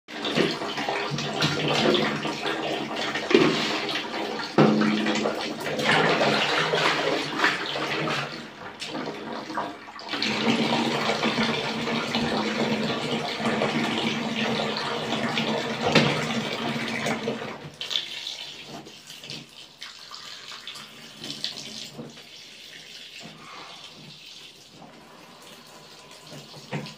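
Water pouring from a tap in a thin stream into a plastic basin of detergent powder, splashing and churning up suds. The pouring dips briefly about a third of the way in and is much quieter for the last third.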